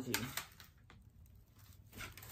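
A few faint clicks of a plastic CD case being handled, with light rustling, in a quiet room.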